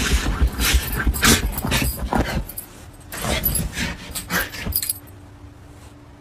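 A dog digging and pawing at a fleece blanket on a bed: a rapid run of scratchy rustling strokes with a jingle of collar tags, in two spells that stop about five seconds in.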